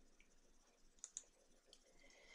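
Near silence: room tone, with two faint short clicks about a second in, from a computer mouse advancing the slide.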